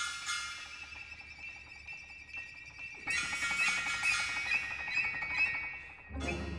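Contemporary ensemble music played live: high held notes, softer in the first half, then a busier, louder passage of short high notes from about halfway, with a piccolo among the high voices.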